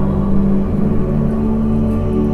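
Ambient, brooding film-score music with steady, sustained low tones.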